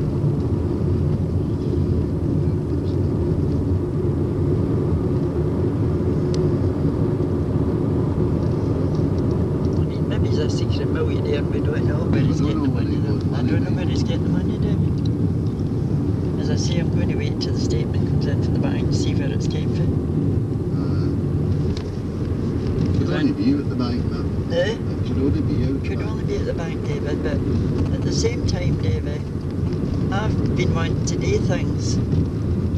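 Steady engine and road noise inside a moving car's cabin, with muffled talk at times.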